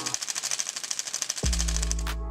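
Split-flap display modules flipping their flaps in a rapid, even clatter of clicks. The clatter stops about one and a half seconds in as the characters settle.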